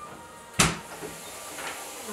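Door pushed open against a person sitting on the floor behind it, with a single sharp thump about half a second in as she falls backward.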